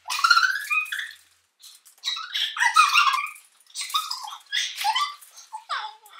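A young woman's high-pitched shrieks and squeals in short bursts, mixed with laughter, as a sticky face mask is smeared over her face.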